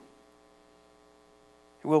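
Faint, steady electrical mains hum, a stack of unchanging tones, in the sound system during a pause in speech; a man's voice comes back in near the end.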